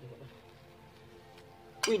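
Faint background music with steady held notes; near the end a sharp click, followed at once by a voice exclaiming "Ui".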